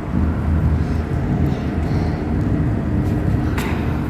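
A low, uneven rumble of background noise with a single short click about three and a half seconds in.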